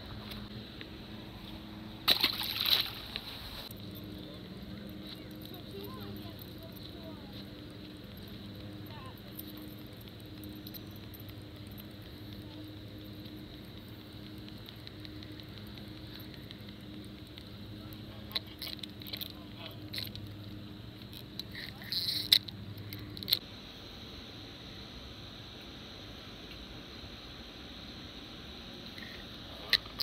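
A splash about two seconds in as a released crappie drops into the lake, then a faint steady low hum with a few light clicks and rustles around twenty seconds in.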